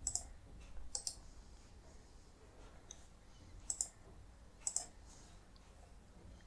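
Computer mouse button clicks, faint: single clicks at the start and about a second in, then two quick double clicks about a second apart.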